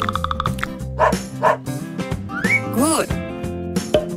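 Cartoon dog barking twice, then a higher yelp, over light background music.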